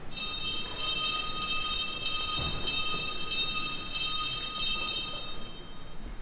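Electric school bell ringing: a steady, high, metallic ring that starts suddenly and stops about five and a half seconds later.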